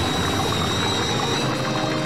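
Cartoon sound effect of coffee pouring and splashing into a cup, over background music.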